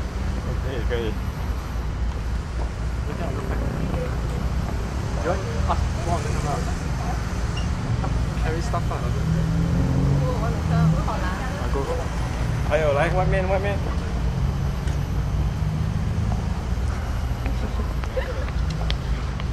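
Scattered bits of people talking over a steady low background rumble.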